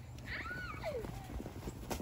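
A child's faint, high shriek that arches up and then slides down in pitch, during a snowball fight in the snow. Near the end there is one short, sharp knock.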